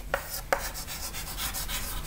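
Chalk writing on a chalkboard: a faint, scratchy rub of chalk strokes with small taps, one sharper tap about half a second in.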